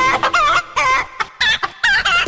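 Chicken clucking: a run of loud, separate bawks, each wavering in pitch, spaced unevenly.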